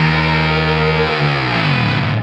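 Electric guitar through a Screwed Circuitz Irvine's Fuzz pedal: a held fuzz note rings on, then its pitch slides down over about the last second.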